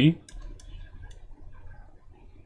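Irregular light clicks and taps of a stylus on a drawing tablet while handwriting is written.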